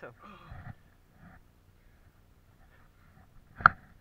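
A single sharp knock about three and a half seconds in, much louder than anything else; before it, faint talk in the first second, then near quiet.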